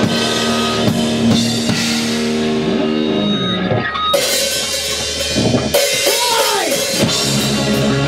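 Live rock band playing loud instrumental hard rock on electric guitars, bass guitar and drum kit. A held chord rings for the first few seconds, then crashing cymbals come in about four seconds in, with a swooping pitch glide a couple of seconds later.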